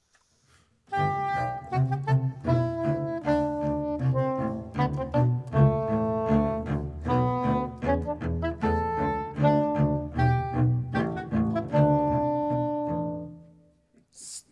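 A live classical duo playing a short piece in fast, detached staccato notes, a low bass line under a higher melody. The music starts about a second in and dies away just before the end. This faster, staccato playing is the cue for a happier, more cheerful feel.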